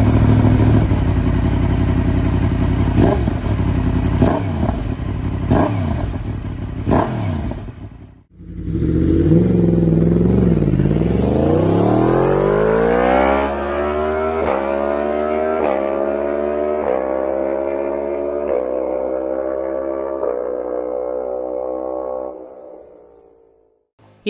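Yamaha MT-10's 998 cc crossplane inline-four, first revved at standstill through an aftermarket slip-on silencer with several sharp throttle blips. Then, heard from on board, it pulls from low revs with a steadily rising note and holds high revs with several short breaks in the note, before fading out.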